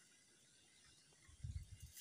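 Near silence, with a few faint, short low sounds in the last half-second.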